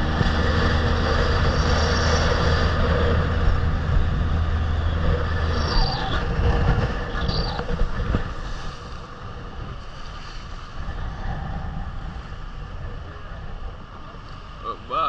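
Outboard motor of a small fibreglass boat running under way, with a steady low hum that stops about six seconds in; after that the sound drops to a softer rumble of water and wind.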